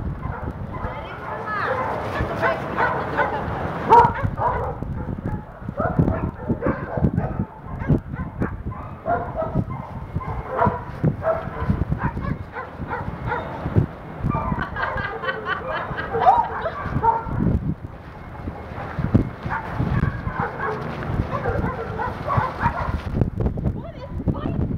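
A group of dogs at play, with repeated barks and yips coming in several bouts.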